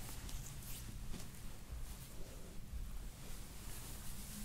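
Quiet handling noise: soft rustling and faint swishes of hands pressing and sliding on bare skin and a towel over the lower back, over a low steady room rumble.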